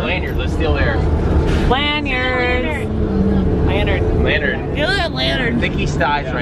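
Voices talking over the steady low rumble of a bus engine, heard from inside the cabin.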